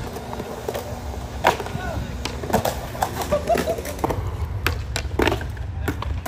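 Skateboard wheels rolling on concrete with a steady low rumble, punctuated by several sharp clacks of the board hitting the ground.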